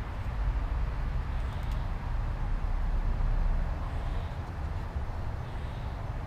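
Steady low rumble of outdoor background noise, with a faint even hiss above it and no distinct events.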